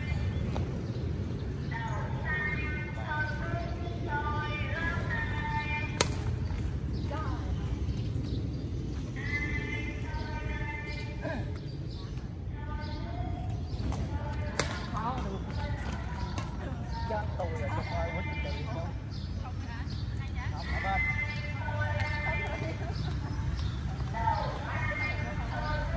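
Badminton rackets hitting a shuttlecock during a rally, two sharp hits standing out about six and fifteen seconds in, over a steady low rumble.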